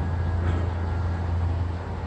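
Steady low rumble inside a moving cable-car gondola cabin as it rides along the haul cable.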